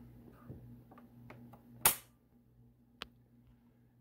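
A single sharp click about two seconds in and a fainter tick about a second later, over a faint steady low hum.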